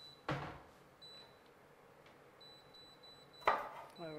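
A chef's knife chopping through green beans onto a wooden chopping board: two sharp knocks about three seconds apart, the second one louder.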